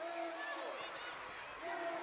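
A basketball being dribbled on a hardwood arena floor, with faint scattered bounces over a low murmur of crowd and voices.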